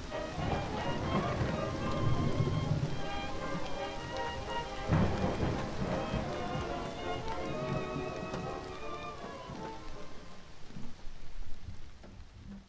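Outro sound effect of rain and thunder under held musical tones. The thunder swells about five seconds in.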